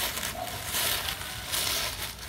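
Dry fallen leaves crunching and rustling under a crawling toddler's hands and knees, in several irregular bursts.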